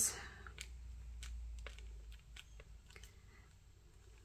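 A handful of faint, scattered clicks and taps from wooden sticks pressing thin plastic wrap down over pieces of tumbled sea glass in wet resin.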